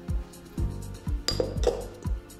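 Background music with a steady low beat about twice a second. Over it, two sharp clinks of kitchenware come a little over a second in, the first ringing briefly.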